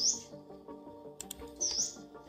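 Background music with steady sustained chords, and a short high chirp heard twice, at the start and near the end.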